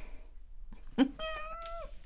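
A single short cat meow about a second in, held at a steady pitch and dropping off at the end, just after a light click.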